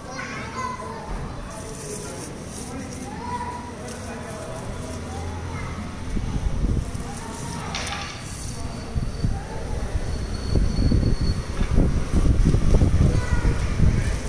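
Distant voices of children playing and chattering. In the second half a low, uneven rumbling noise grows louder and covers them.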